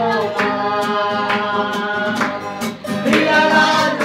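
A group of voices singing together to a strummed acoustic guitar, with a strum about once a second.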